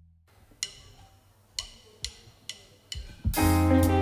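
A count-in of five sharp clicks, two slow and then three quicker, after which a jazz band of piano, electric guitar, tenor saxophone, electric bass and drum kit comes in together about three seconds in.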